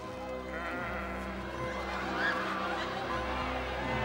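Sheep bleating a few times over background music with long held chords.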